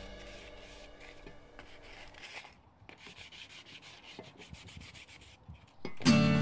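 Faint hand scraping and rubbing of a rusty metal part, a run of short, irregular strokes as the rust is worked off.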